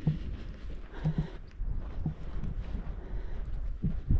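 Wind rumbling on the microphone, with irregular footsteps on a grassy path.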